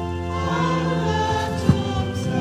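Congregation singing a hymn with organ accompaniment, the organ holding steady chords. There is one sharp knock near the end.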